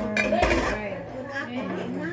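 Lid set down on a cooking pot with a clink and a dull knock about half a second in.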